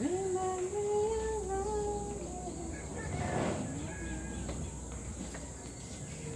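A voice humming a slow tune in long held notes, fading out a little under halfway through, followed by a brief rustle.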